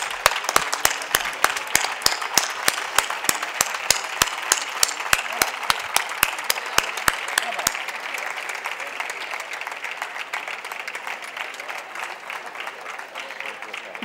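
Audience applauding, with sharp, close-by claps standing out over the crowd's clapping for the first half; after about eight seconds the applause thins and fades.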